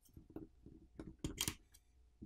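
SIM card tray being slid out of a smartphone's frame: a run of small clicks and scrapes, loudest in a quick cluster a little over a second in.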